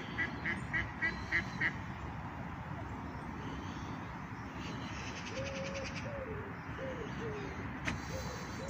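A duck quacking in a quick series of about seven calls in the first two seconds, over steady outdoor background noise. Around the middle a rapid high trill follows, and lower cooing bird calls come in near the end.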